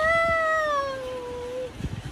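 A woman's long, drawn-out mock wail: play-acted crying on one held note that rises slightly, then slowly sinks and stops shortly before the end.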